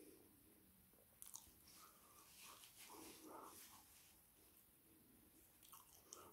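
Faint chewing of soft steak-cut chips, with small mouth clicks and smacks, busiest from about one to four seconds in.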